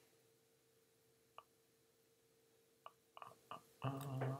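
Near silence: room tone with a faint steady hum, broken by a few short, soft clicks in the second half.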